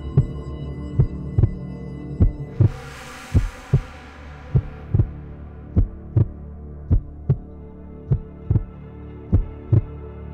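Instrumental song intro: pairs of low thumps in a slow heartbeat rhythm, about one pair every 1.2 seconds, over a steady drone. A hissing swell rises about two and a half seconds in and fades away over the next two seconds.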